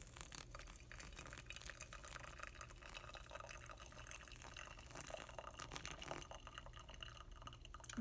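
Hot water poured in a thin stream from a kettle onto coffee grounds in a metal pour-over dripper: a faint trickle with many small spatters and drips as the grounds are wetted.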